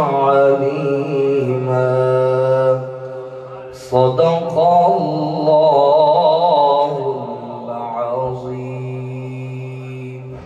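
A man chanting a naat (devotional praise of the Prophet) unaccompanied, in long drawn-out phrases with a wavering, ornamented pitch. The voice dips about three seconds in and a new phrase begins about four seconds in.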